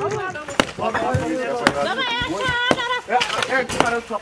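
Metal demolition tools striking concrete: a few sharp knocks spaced irregularly, among men's voices.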